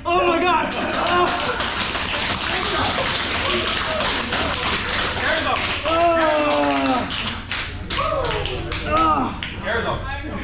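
TASER shock cycle: rapid electrical clicking and crackling, with a man's loud pained cries as he is hit.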